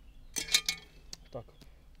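Brief metallic clinking and rattling from a cast-iron pot and its wire bail handle as it is handled, with one sharp clink about half a second in.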